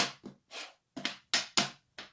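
Wooden draughts pieces being moved on a wooden board: about six short, sharp clacks as pieces are lifted and set down.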